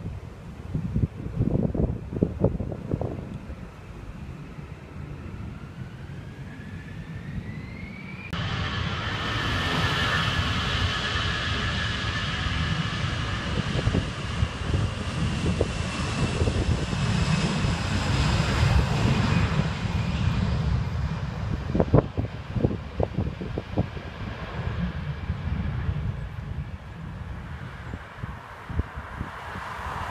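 Jet airliner passing low over the airfield: a whine rises in pitch, then about eight seconds in the engine noise turns suddenly loud, with high tones that slowly fall in pitch and fade as it moves away. Gusts of wind buffet the microphone near the start and again later.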